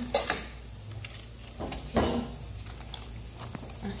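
Quiet handling sounds of metal tongs and cabbage wedges against a stainless steel soup pot: scattered light clicks, with a louder bump about two seconds in, over a steady low hum.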